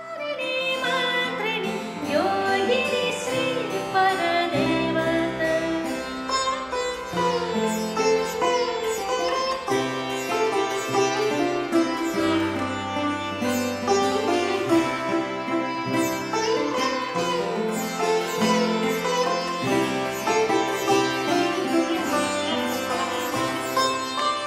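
Music blending Indian classical and Baroque styles: a sitar plays a melody with gliding notes over low held bass notes that change every couple of seconds. The music fades in at the very start.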